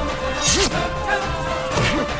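Film fight-scene punch and hit sound effects over background music: two sharp hits, one about half a second in and one near the end, with a held musical tone under them.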